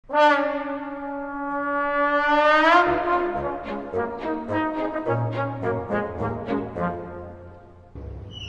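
A solo slide trombone holds one long note for nearly three seconds and slides it upward at the end. Then the orchestra comes in under it with low bass notes and short, regularly accented notes, and the music fades away near the end.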